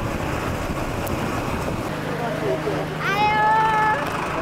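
A cat meowing once about three seconds in: a single call that rises quickly and is then held level for about a second. Faint chatter and a low steady hum lie under it.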